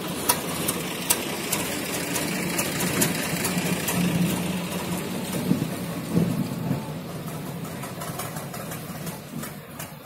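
An engine running steadily, a continuous drone with a low hum, with scattered short clicks over it.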